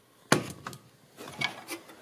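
Handling noise: a sharp click about a third of a second in, then a few light clicks and rubbing about a second later, as a hand reaches in around the small engine's throttle linkage.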